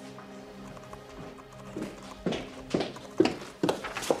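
Background music with soft held tones. About halfway in, hard-soled footsteps on a hard floor begin, about two steps a second and growing louder as someone walks closer.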